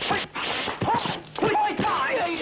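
Fighters yelling and grunting in a kung fu fight, several short sharp cries in quick succession over noisy rushes of sound.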